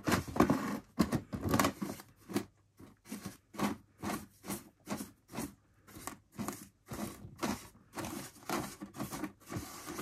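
A small brush scrubbing WD-40 over the plastic body shell and its metal screws in quick, short strokes, about three a second.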